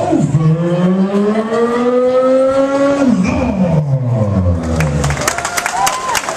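A ring announcer's amplified voice stretching out the fighter's name in one long call through the microphone, rising in pitch for about three seconds and then falling away. Applause breaks out near the end.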